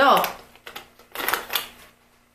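Hands rummaging in a zippered cosmetics pouch: plastic makeup cases clicking and rustling against each other in a few short clattering bursts.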